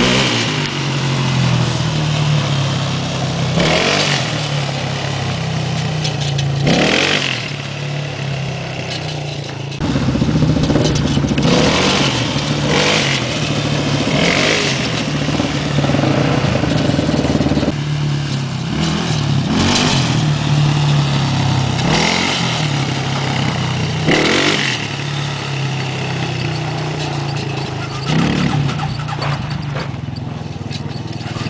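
Small Suzuki quad's engine running under a child rider, its pitch and loudness rising and falling with the throttle, with short loud rushes of noise every few seconds.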